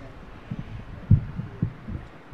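A few short, low, dull thumps, the loudest about a second in, over a faint steady background hum.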